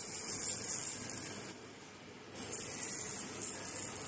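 A baby's plastic rattle toy with loose beads in a clear chamber, shaken in two bouts: a dry, hissing rattle that stops about a second and a half in, then starts again about two and a half seconds in.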